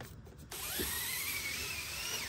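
Pleated retractable screen door on a camper van's sliding doorway being drawn across. It starts suddenly about half a second in as a steady rushing slide with a faint whine that rises in pitch.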